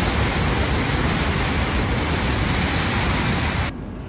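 E5-series Shinkansen bullet train passing through a station at high speed: a loud, steady rushing noise that cuts off suddenly near the end.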